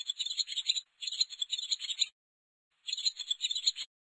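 Bird-twitter sound effect: three bursts of rapid, high-pitched chirping trills, each about a second long, with short silent gaps between them.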